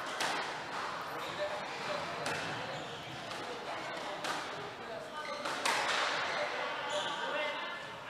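Squash rally sounds: racket strikes and the ball smacking off the court walls, a few sharp knocks spread irregularly and echoing in the hall, with faint voices in the background.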